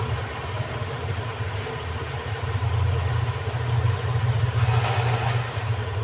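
Electric fan running, a steady low drone. About five seconds in there is a brief rustle of folded cloth being handled.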